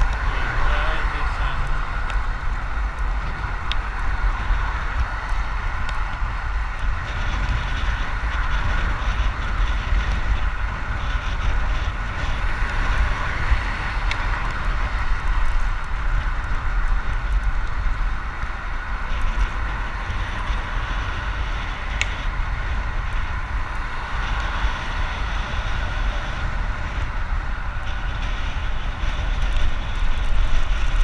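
Steady wind rumble on the microphone of a road bicycle in motion, with the hum of its tyres rolling on asphalt.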